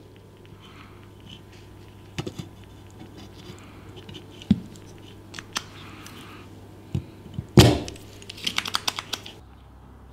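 Soldering iron working the lugs on a circuit board while desoldering: scattered light clicks and taps, with a sharper click about seven and a half seconds in and then a quick run of small clicks, over a faint steady hum.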